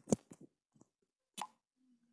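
Short clicks from tapping a smartphone's on-screen keyboard, the loudest just at the start, then a sharp pop about a second and a half in as a WhatsApp message is sent.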